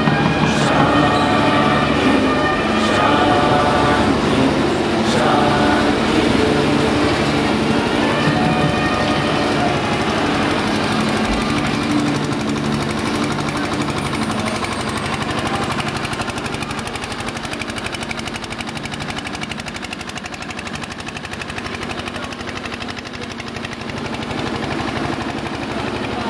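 Loud, dense procession din: rapid drumming with steady held pipe-like tones over a crowd. The held tones are plainest in the first several seconds, and the whole sound eases a little after the middle.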